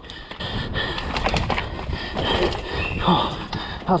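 Enduro mountain bike racing down a rocky, leaf-covered forest trail: a steady rush of tyre noise over dirt and stones, broken by frequent small knocks and rattles from the bike on the rocks.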